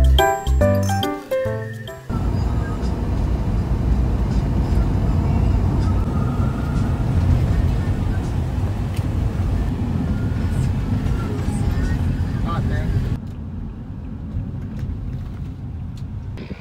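A few notes of keyboard-like music end about two seconds in. Then a steady low road and engine rumble inside a moving passenger van's cabin follows, dropping quieter a couple of seconds before the end.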